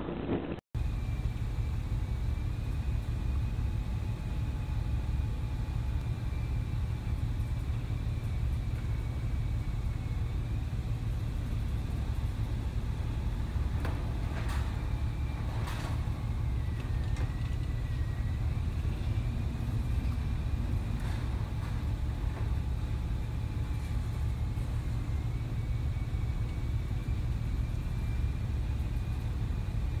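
Steady low rumble with wind and rushing sea heard aboard a loaded container ship pitching through heavy seas, with a faint wavering whistle above it. Two brief louder swells of noise come about halfway through as spray breaks over the bow.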